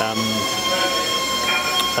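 A steady high-pitched whine made of several even tones, from machinery running in the workshop, with a short spoken 'um' at the start.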